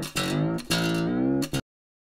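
A string on a Klos carbon fiber acoustic travel guitar plucked a few times while its tuning peg is turned, the note rising as the string is tuned up to pitch. The sound cuts off suddenly about one and a half seconds in.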